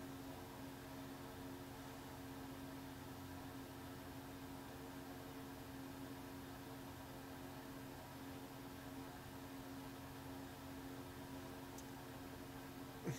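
Faint steady hiss with a low, even hum: room tone picked up by the microphone.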